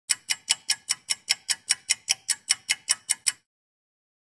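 Rapid, even clock-like ticking, about five ticks a second, that stops abruptly about three and a half seconds in.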